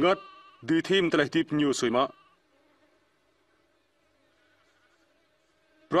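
A man speaking in Jarai for about a second and a half, then near silence with only a faint steady hum.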